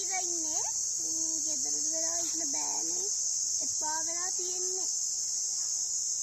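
A steady, high-pitched chorus of chirring insects, with a woman's voice speaking in short phrases over it.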